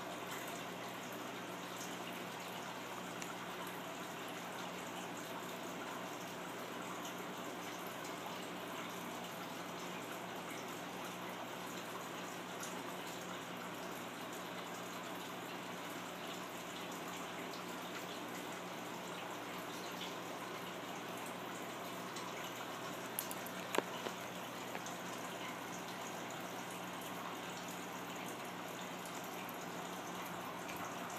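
Steady even hiss with a faint low hum, broken by a few light clicks about 23 to 24 seconds in.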